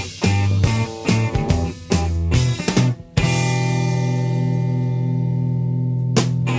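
Instrumental intro of a blues-rock song: electric guitar, bass and drum kit play a run of short, punchy band hits. About three seconds in, they give way to a long sustained chord, held steady with a slight wobble.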